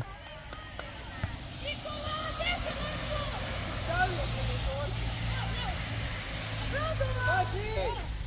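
A car driving past on a wet road: a low engine hum with tyre hiss that swells about three seconds in and fades near the end, under faint distant shouts of children playing.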